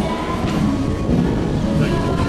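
Steady low rumbling noise on a moving cruise ship's open deck, with faint music underneath.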